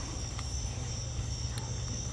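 Night chorus of crickets: a steady high-pitched trill, with a low steady hum underneath.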